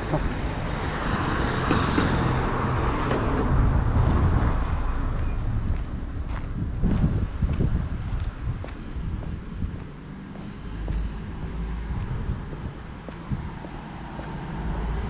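Road traffic on a town street: a car goes past in the first few seconds, then fainter traffic noise with wind rumbling on the microphone.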